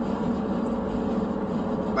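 Steady road and engine noise of a moving car, heard from inside the cabin as a low, even rumble.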